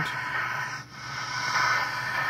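Static hiss from the speaker of a 1964 Arvin eight-transistor medium-wave radio being tuned and turned between stations, with no station coming in clearly. The hiss dips briefly a little before halfway. This is poor AM reception in an office, which is usual for such a radio there.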